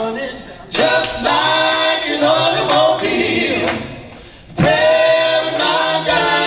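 Male vocal group singing gospel together, the voices dropping away about four seconds in and coming back strongly a moment later.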